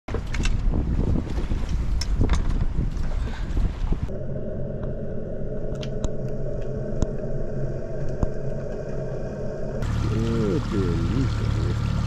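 Wind and water rushing past the microphone aboard a sailboat under way, cutting about four seconds in to muffled underwater sound with a steady low hum and faint clicks. Near the end, short gliding pitched sounds come over a steady hum.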